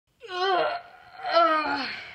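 A high-pitched voice making two drawn-out wordless cries, the second louder and falling in pitch.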